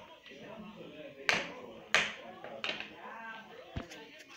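Four sharp taps on a cloth-covered table, spaced irregularly about half a second to a second apart, over faint talk.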